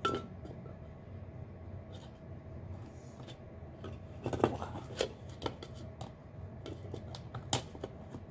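Stainless steel travel mug liner being worked into its plastic outer shell: scattered light clicks and knocks of metal and plastic, the sharpest about halfway through and again near the end, over a faint steady hum.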